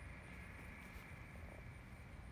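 Faint steady background noise: a low rumble with a thin high hum, and no distinct event.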